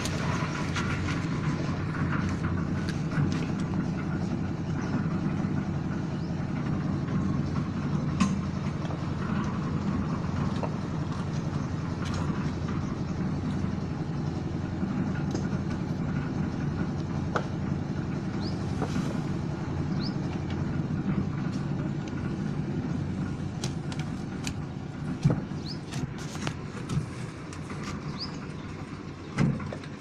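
A motor running steadily with a low hum, with a few sharp clicks and knocks in the last few seconds.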